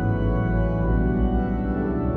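Pipe organ playing sustained full chords over a deep pedal bass, the harmony shifting from one chord to the next, with the long reverberation of a cathedral.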